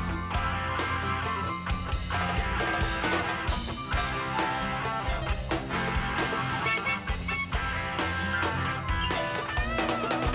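Live rock band playing an instrumental passage, guitar to the fore over steady bass and percussion.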